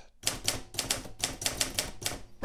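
Remington manual desktop typewriter being typed on: a fast run of sharp keystrokes, the typebars striking the platen several times a second.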